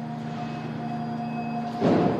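Class 423 S-Bahn electric train at an underground platform: a steady hum, then a sudden loud rush of noise just before the end.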